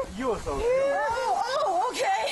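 A woman's voice exclaiming, "Oh my God, okay!", in short syllables that rise and fall in pitch.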